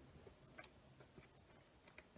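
Near silence with a few faint ticks and rustles: a trading card being slid into a thin plastic card sleeve.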